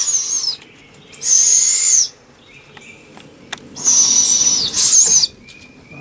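Young barred owls giving raspy, hissing begging screeches. There are three calls, each about a second long: one at the start, one about a second in, and one near the end. They are the food-begging calls of hungry owlets that have not yet been fed. A few faint clicks fall between the second and third call.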